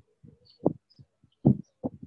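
A run of irregular dull thumps, two or three a second and loudest around the middle, with faint short bird chirps above them.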